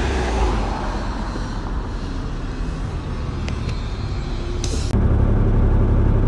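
A city bus running, heard as a steady low engine rumble, with a short hiss of air about three-quarters of the way through. After the hiss the rumble grows louder.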